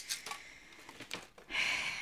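Faint handling noise, then a short scraping hiss near the end from a cheap snap-off craft knife being worked against paper on a cutting mat.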